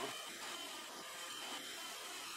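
Robot vacuum cleaner running with a steady whir and a faint high whine, carrying a cat on top.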